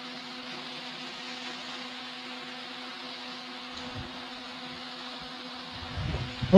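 Electric fans running: a steady whir with a low, even hum, and a faint low knock about four seconds in.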